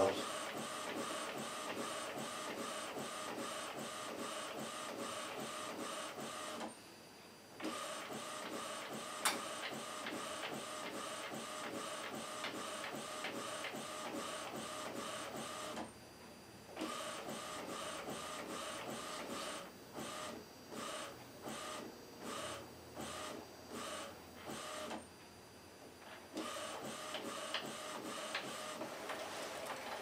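Epson WorkForce WF-2010W inkjet printer printing a sheet of solid colour blocks, its print-head carriage running steadily back and forth. There are brief pauses about a quarter and halfway through, then a run of short stop-start bursts before steady running resumes.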